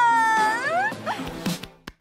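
A woman crying in a long, high-pitched wail that dips and then rises in pitch, followed by a couple of short whimpers; the sound cuts out just before the end.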